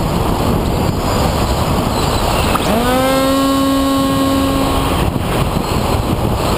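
Airflow rushing over the camera on a Skysurfer RC plane in flight. Near the middle, the plane's electric motor and propeller whine sweeps quickly up in pitch, holds level for about two seconds, and then stops.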